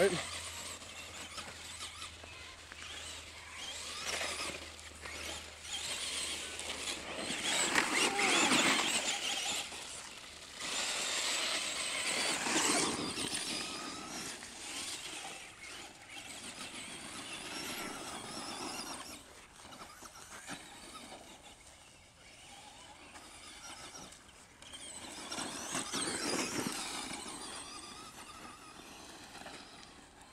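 Traxxas Stampede electric RC monster truck's brushed motor whining in repeated surges as it accelerates and spins donuts, with its tyres scrabbling on loose gravel. The surges are loudest about eight and twelve seconds in and again near the end.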